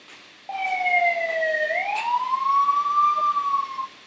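Siren sound effect played back over an online video call: one wailing tone starts about half a second in, dips slowly, then sweeps up to a higher pitch and holds, cutting off just before the end.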